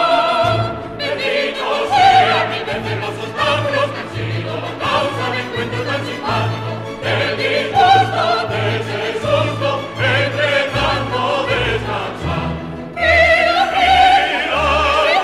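Zarzuela concertante: operatic soloists and chorus singing with full orchestra over a pulsing bass line. A held chord at the start breaks off, and the voices swell to loud sustained notes near the end.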